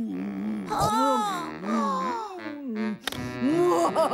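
A voice making a drawn-out wordless moan whose pitch wavers up and down. About three seconds in, it gives way to shorter vocal sounds that rise and fall quickly.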